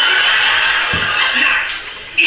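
Sound of a comedy sketch played through a television's speaker: a dense, loud wash of sound that fades toward the end, with a low thump about halfway through.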